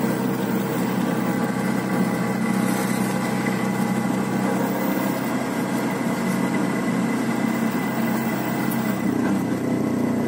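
Small auto-rickshaw engine running steadily under way, heard from inside the open cabin, with road noise over it.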